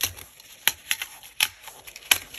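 Metal ring mechanism of a six-ring A6 binder being worked by hand: a series of about six sharp clicks and snaps as the rings are pulled open and an insert is taken off them, with a light rustle of plastic and paper between.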